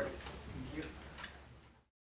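Faint hearing-room sound: a low murmur of voices and a few light clicks, fading away until the recording cuts off abruptly to silence near the end.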